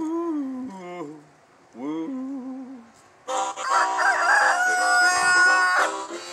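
A man singing two high 'woo' wails, then a loud harmonica blues riff starting about three seconds in.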